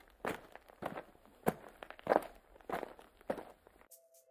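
Red-footed tortoise walking across artificial turf, its feet scraping down in a slow run of steps about every half second.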